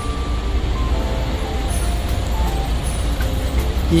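City road traffic: a steady low rumble of car engines as a line of cars turns right.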